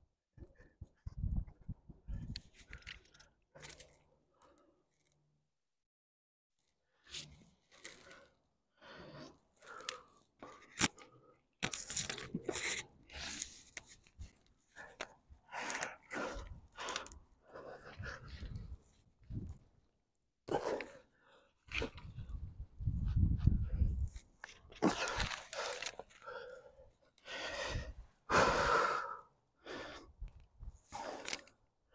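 A climber breathing hard, with gasps and sharp exhalations, mixed with scraping and rustling of rope and gear against the rock, coming in irregular bursts with a few seconds of quiet about four seconds in.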